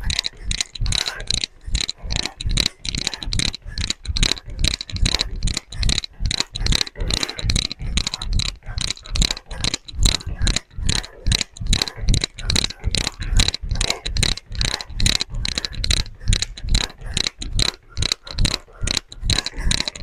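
Footfalls of a person hopping on one foot on an exercise mat: sharp, regular landings, about three a second.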